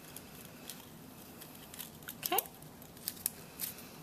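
Light, scattered clicks and rustles of cut paper petals being pressed and handled by hand.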